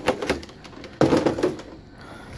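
Handling sounds: a few light clicks, then a short, loud scraping rustle about a second in.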